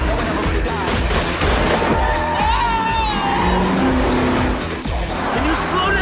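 Action-trailer soundtrack: music over the sound of cars racing at speed, with tyre squeal.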